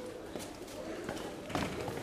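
A pause in the dialogue: faint, steady room tone with no clear event.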